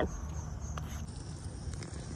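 Crickets chirping faintly in a thin, steady high tone over a low, steady outdoor rumble.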